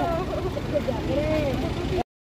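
People talking close by, short bits of women's speech, over a steady low rumble.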